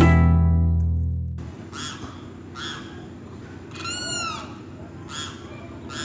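The last chord of a llanero joropo ensemble (cuatro, bass and maracas) rings out and dies away over the first second and a half. Then a bird calls again and again, about once a second, with one longer arched call about four seconds in.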